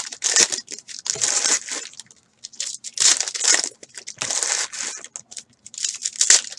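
Foil trading-card pack wrappers crinkling and tearing as the packs are handled and ripped open, in several short bursts.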